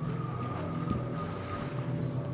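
Sound-art piece playing: a steady low drone with a thin held tone above it and a few soft clicks.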